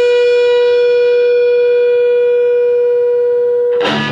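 Electric guitar holding a single long, steady note that rings on unchanged, cut off just before the end as strummed chords start again.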